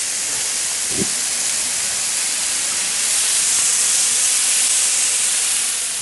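Potatoes and onion frying in a large pan: a steady, loud hiss of sizzling fat and steam.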